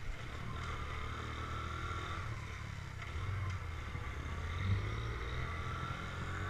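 Small motorcycle engine running steadily as the bike is ridden slowly along a street.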